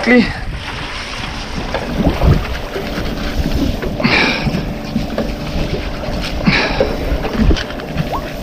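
Open-sea boat ambience: wind on the microphone and water washing along the hull, over a faint steady hum. Two short bursts of splashy noise come about four and six and a half seconds in.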